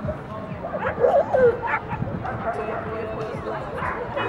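A dog barking in short, high calls over background crowd talk, loudest about a second in.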